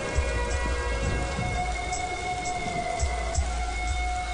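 Steady rain falling, with a film score's long held notes running underneath.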